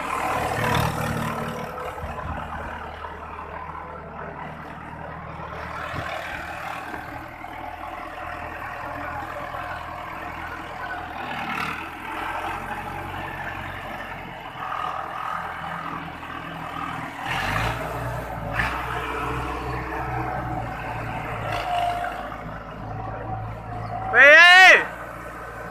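Mahindra Arjun 555 DI tractor's four-cylinder diesel engine running steadily, growing louder and deeper from about seventeen seconds in as the tractor moves off, with a few brief knocks.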